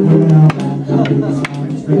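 A small stringed instrument strummed in a steady rhythm, chords ringing between vocal lines with a sharp accent about once a second.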